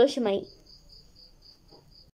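A voice speaks briefly at the start; then a faint, high-pitched chirping repeats evenly, about four or five chirps a second, and stops near the end.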